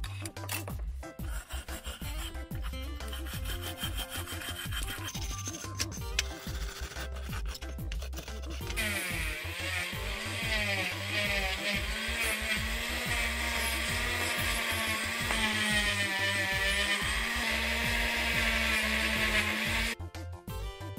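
Short scraping strokes as loosened paint is scraped off a diecast car body. About nine seconds in, a rotary tool with a thin cutoff disc starts grinding on the bare diecast metal, a loud whine whose pitch wavers as the load changes. Background music with a low beat runs underneath.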